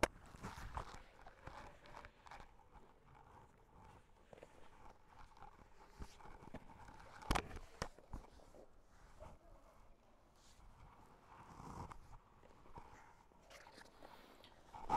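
Faint rustling and soft thumps of bodies and limbs shifting on a foam grappling mat, with one sharper knock about seven seconds in.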